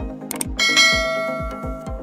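A notification-bell 'ding' sound effect about half a second in, just after a sharp click, ringing out and fading over about a second. It plays over electronic background music with a steady beat of about three thumps a second.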